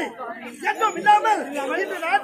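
Speech: stage actors' spoken dialogue.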